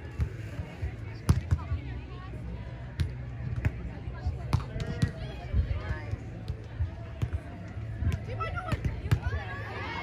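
Beach volleyball rally: several sharp slaps of hands on the ball, from the serve through the pass and the attack, with short calls from players and onlookers and a steady low rumble underneath.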